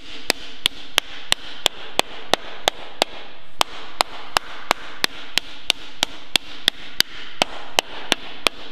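A hard maple offset (reverse-curve) slapper slapping the edge of a sheet-metal panel in a steady rhythm of about three sharp, ringing strikes a second, with one brief pause about three seconds in. The strikes are stretching the panel's outer edge to roll it over into a curve with little blemishing of the surface.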